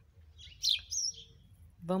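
A bird chirping outdoors: a short cluster of high, quick chirps a little under a second in.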